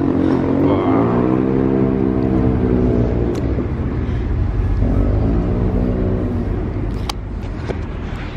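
A motor vehicle engine rising and then falling in pitch, once for about three seconds and again more briefly around five seconds in, over a steady low rumble. A few sharp clicks come near the end.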